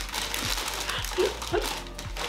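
Paper takeout bag crinkling and rustling as it is pulled open and rummaged through, with short bursts of laughter over it.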